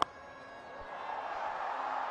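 One sharp crack of a cricket bat striking the ball on a sweep shot. It is followed by a stadium crowd cheering, which swells steadily over the next second or two.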